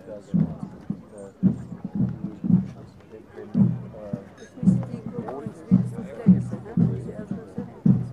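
A drum beaten in a steady rhythm, about two beats a second, with voices talking underneath.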